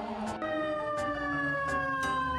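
Fire engine's siren sounding one long wail that comes in about half a second in and slowly falls in pitch.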